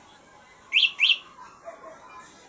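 Two short, high-pitched chirps, each rising in pitch, about a third of a second apart.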